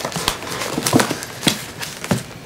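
Wrapped bundles of banknotes being handled and set down on a table: a run of irregular soft knocks, about six in two seconds.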